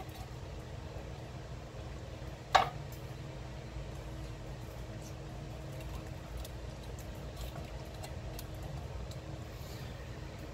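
Condensed cream soup being scraped out of cans into a slow cooker crock with a spatula: faint scraping and squelching, with one sharp knock about two and a half seconds in. A steady low hum runs underneath.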